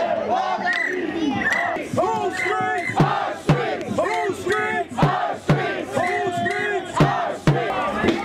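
A crowd of marchers shouting a rhythmic protest chant in unison. From about three seconds in, drum hits struck with sticks keep time, often in pairs about half a second apart.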